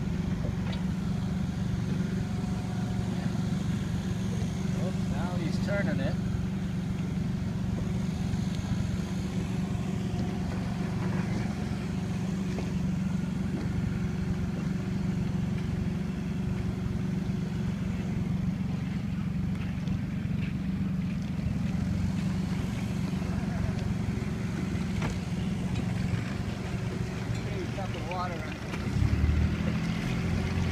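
Motorboat engine running steadily at low speed, a constant low drone that grows louder just before the end.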